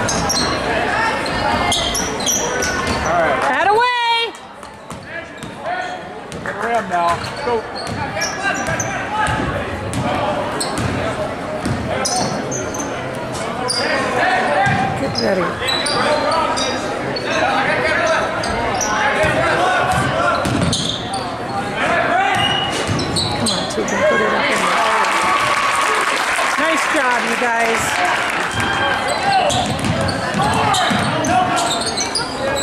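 Gym sounds of a basketball game in play: a ball dribbling and bouncing on the hardwood court under a constant hubbub of spectator voices in a large hall. A brief high-pitched tone just before four seconds in is followed by a short lull, and the crowd grows louder from about 24 seconds in.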